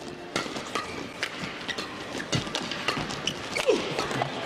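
Badminton rally: a quick run of sharp racket hits on the shuttlecock, with players' footwork on the court and the hall's background around them.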